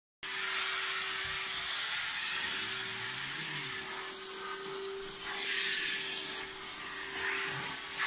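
Portable carpet extractor's vacuum motor running steadily, a constant hum under a rushing air noise, as the cleaning wand is drawn over the carpet.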